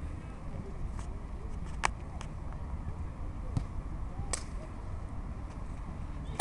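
Open-air sports-field ambience: a steady low rumble with faint distant voices, broken by a few sharp clicks or knocks, the two loudest about two seconds and four and a half seconds in.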